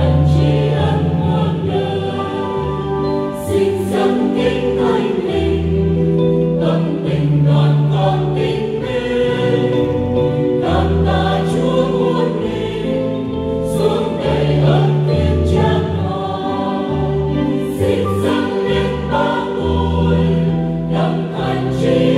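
Mixed church choir of women's and men's voices singing a Vietnamese Catholic hymn in parts, with steady sustained notes.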